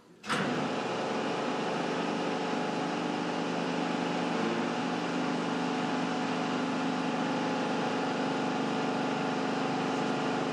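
A machine engine running steadily: a constant hum with several steady tones over a noisy rush, which cuts in suddenly about a third of a second in.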